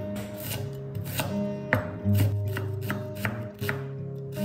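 Cleaver chopping red onion on a wooden cutting board: about eight sharp knocks of the blade on the board, roughly two a second and unevenly spaced, over background music.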